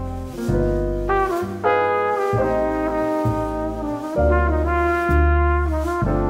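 Background instrumental music: brass lines over a bass that changes note about every half second to second.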